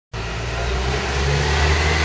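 Engine of a box truck running close by: a steady low hum that rises slightly in pitch about a second in, over a steady hiss from the wet street.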